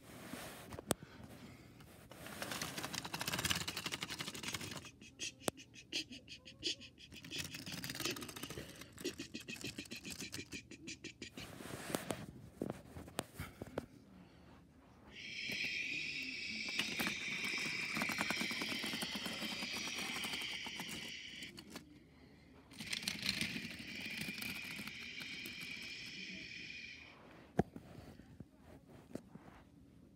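Small battery-powered toy train motor running with a high, steady whirring whine for about six seconds midway and again for a few seconds later. Before it come scattered clicks and rattles of plastic toy train parts on the track.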